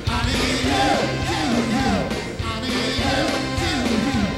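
A live rhythm-and-blues band playing, with a singer's voice over it.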